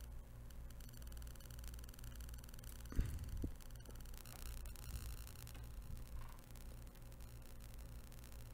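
Faint steady low hum with a soft knock about three seconds in and a lighter one just after, as a MacBook logic board is handled and a USB-C cable is moved to its other port.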